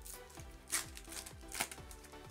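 Background music with a steady beat, over which Pokémon trading cards are handled, giving two brief rustles, one a little under a second in and one near the end.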